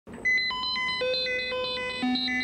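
Electronic beeping tones in a fast repeating on-off pattern, high-pitched at first, with lower tones joining in layers about half a second and one second in, like a computer-style signal sequence.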